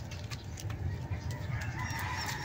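Faint distant bird calls over a steady low rumble of outdoor background noise.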